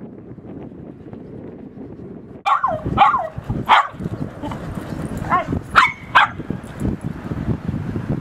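Small dog giving sharp warning barks and yelps at a larger dog to back off: several short calls in two bursts, starting about two and a half seconds in, the pitch dropping within some calls.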